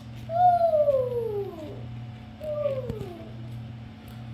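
Two long falling pitched glides, a 'wheee'-style flying and falling sound effect: the first slides down for over a second, the second, shorter one starts about halfway through. A faint steady hum lies underneath.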